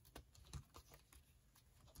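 Faint light ticks and paper rustles of a B6 Stalogy notebook's pages and tabbed inserts being flipped through by hand, with a slightly louder tick about half a second in.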